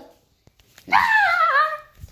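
A child's loud, drawn-out "Ah!" scream, about a second long with falling pitch, starting just under a second in: a mock jumpscare cry in play.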